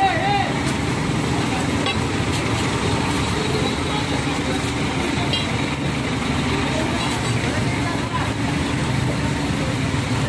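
Large truck engine idling steadily, under street traffic noise and scattered voices.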